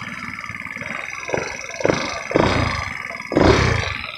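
Four-stroke single-cylinder engine of a 150cc GY6 scooter revving under throttle in several rough surges while riding over grass, the strongest near the end; it sounds mean.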